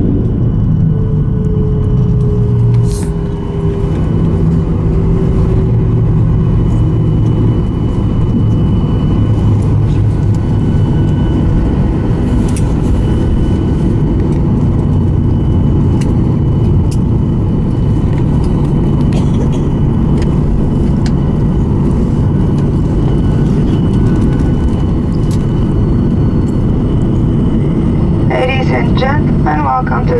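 Jet airliner's cabin roar on the landing rollout, heard from a window seat over the wing: a loud, steady low rumble from the engines and wheels on the runway. A faint engine whine falls slowly in pitch over the first several seconds as the engines spool down. A cabin announcement begins near the end.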